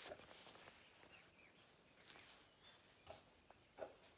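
Near silence, with faint rustling of a cloth nappy's fabric as it is handled and unfolded close to the microphone.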